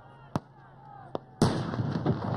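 Scattered gunfire at an exercise: two sharp single shots about a second apart, then about one and a half seconds in, a sudden loud rush of noise that carries on.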